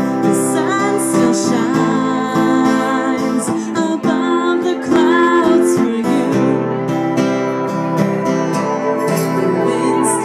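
A woman singing while strumming an acoustic guitar, a live solo song.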